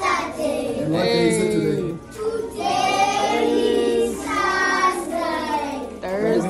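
A group of young children singing together in unison, in long phrases with drawn-out notes.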